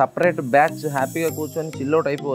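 A man talking, with a high hiss over the first second or so and background music.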